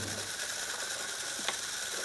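Automated laboratory machinery running with a steady mechanical whir and fine rapid clicking, with one sharper click about one and a half seconds in.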